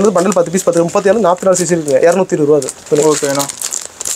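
A man talking almost without pause, with the crinkle of plastic shirt packaging being handled under his voice.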